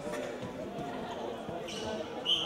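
Players' voices calling out across an echoing sports hall, mixed with a few thuds of a futsal ball on the hard court floor.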